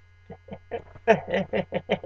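A man laughing: a run of short 'ha-ha' pulses, about five a second, getting louder about a second in, over a steady low hum.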